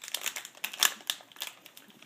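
Plastic parts bag crinkling as it is handled and opened: an irregular run of small crackles, the loudest a little under a second in.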